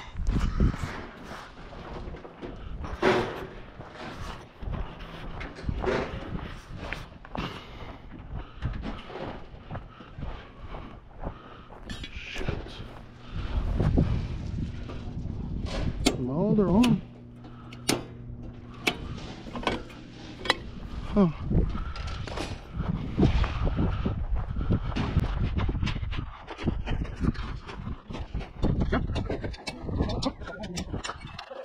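Footsteps and handling knocks while walking across a dirt construction lot, with a circuit breaker in a temporary power-pole panel being switched back on partway through after it tripped. A low steady hum runs for several seconds around the middle.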